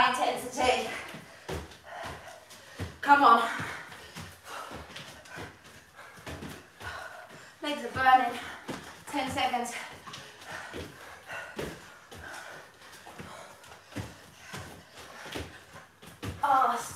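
Repeated thuds of feet and hands landing on exercise mats over a wooden floor during jumping bodyweight exercises. Brief bursts of voice come at the start, about three seconds in and about eight seconds in.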